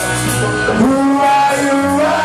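Live rock band playing in a small room: electric guitar, bass guitar and drum kit.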